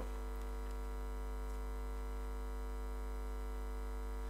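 Steady electrical mains hum with a faint hiss from the sound system, unchanging throughout, with no other sound on top.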